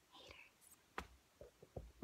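Faint breathy sound, then a sharp click about a second in and a few soft knocks near the end: handling of the camera as the recording is stopped.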